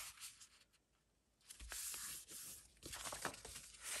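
Sheets of printed paper rustling and sliding against each other as they are leafed through by hand, in two short, soft spells, one about a second and a half in and one near the end.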